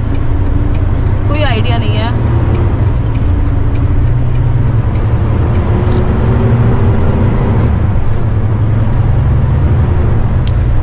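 Steady low drone of a semi-truck's diesel engine and road noise, heard from inside the cab while driving.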